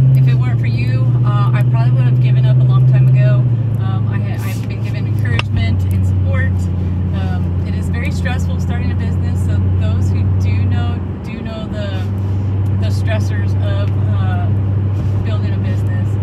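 A woman talking inside a moving car, over a steady low engine and road drone that drops in pitch about three and a half seconds in.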